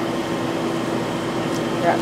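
Steady machine hum with a low, even drone, like a fan or ventilation unit running.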